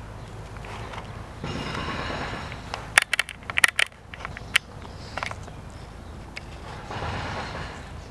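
Handling and movement noise as a person steps through a yurt's doorway with a handheld camera: a stretch of rustling, then a quick run of sharp clicks and knocks over about a second and a half, then another brief rustle near the end.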